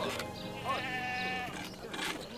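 A goat bleats once, a held call about a second long, over soft background music.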